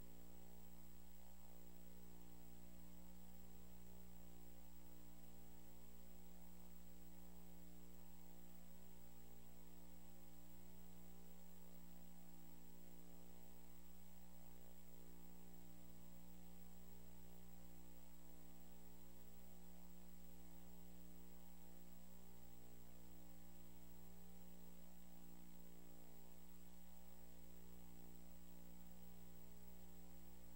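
Steady electrical mains hum with a stack of overtones and a faint, steady high-pitched whine, unchanging throughout.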